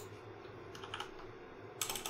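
Computer keyboard keystrokes: a few faint taps around the middle, then a quick cluster of sharper key clicks near the end.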